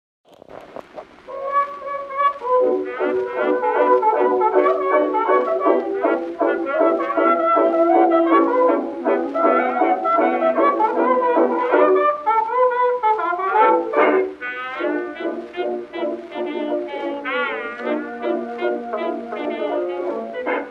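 Early jazz dance band playing an instrumental introduction, with brass out front. It has the thin, narrow sound of an acoustic-era 78 rpm record: no deep bass and no bright top.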